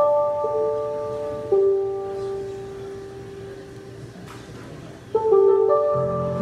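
Electric piano playing slow, bell-like sustained chords in a jazz intro: a chord struck at the start and another about a second and a half in, left to ring and fade, then a new chord near the end.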